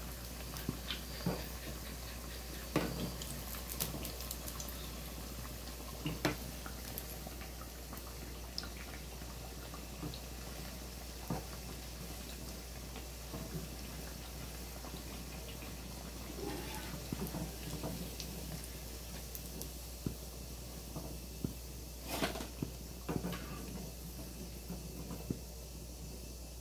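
Pakoras deep-frying in hot oil in an iron kadhai, a steady sizzle, with a few sharp clinks of a metal slotted spoon against the pan as the pieces are turned and lifted out.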